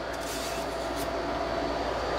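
Steady background hum and hiss, like a fan or other running machinery, with a faint light click about halfway through.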